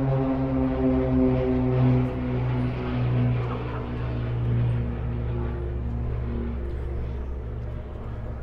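A low, steady engine drone at one even pitch, fading over its last second or two.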